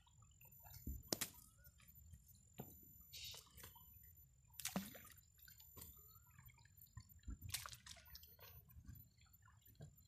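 Faint water sloshing and dripping as a wet fishing net and its catch are handled in a small boat, with several short knocks a second or two apart.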